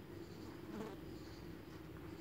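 Faint frying of mutton and tomatoes in oil in a pressure cooker, under a steady low hum.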